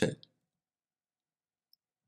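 The last syllable of a spoken radio call trails off just after the start, then digital silence with a single faint tick near the end.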